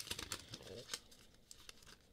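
Faint crinkling and small tearing sounds of a paper wrapper being peeled off a power adapter by hand, thinning out after about a second.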